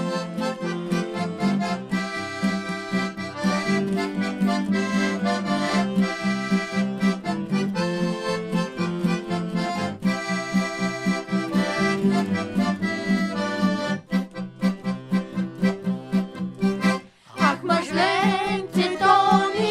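Accordion playing an instrumental break in a horo, a folk dance tune, over a steady pulsing bass and guitar accompaniment; the music drops out briefly near the end.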